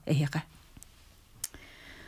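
A woman's voice for the first moment, then a quiet pause in the conversation with one short, sharp click about a second and a half in.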